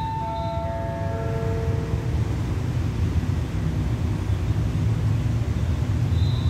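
Electronic station PA chime of four falling notes, fading out over the first two seconds, over the steady low rumble of the stationary diesel passenger train idling at the platform.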